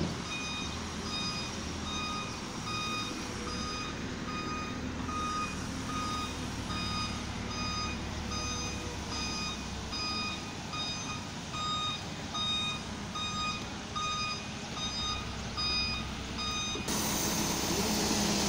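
Concrete mixer truck reversing, its back-up alarm beeping steadily at roughly two beeps a second over the truck's low engine rumble. The beeping stops near the end.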